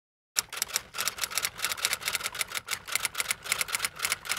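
Typewriter keys striking in a quick, steady run of about seven clacks a second, starting suddenly just after the beginning.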